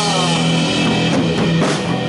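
Punk-rock band playing a song: electric guitar, bass guitar and a drum kit, with steady drum hits over sustained guitar chords.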